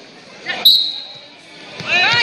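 A single short, high-pitched squeak that starts sharply about two-thirds of a second in and fades within half a second, heard in a large gym.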